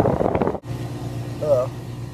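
A voice over loud noise, cut off abruptly about half a second in, then a steady low hum with a short vocal sound.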